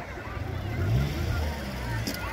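A motor engine running, its pitch rising briefly about a second in, over the chatter of many voices.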